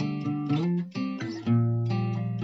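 Music without vocals: acoustic guitar strumming chords, about two strums a second.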